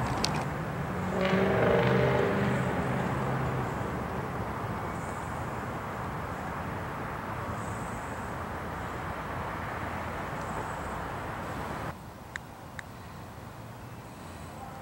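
A motor vehicle passing by, its engine and tyre noise swelling about two seconds in, then slowly fading into a steady traffic hum that cuts off suddenly near the end.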